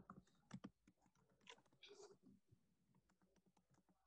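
Faint typing on a computer keyboard: a scatter of separate keystrokes that stops about two and a half seconds in.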